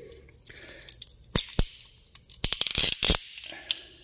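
Sharp clicks and crackling as a chafed throttle-body wiring harness, in a coiled-spring sheath, is worked by hand and with wire cutters, with a quick run of clicks about two and a half to three seconds in.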